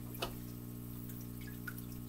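Aquarium running with a steady low hum and faint trickle of water, with a single sharp click about a quarter second in and a few faint ticks as water conditioner is added from a small bottle.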